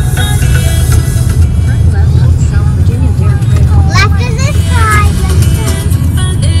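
Music playing over the steady low rumble of a car's cabin on the move. A high voice sounds briefly about four seconds in.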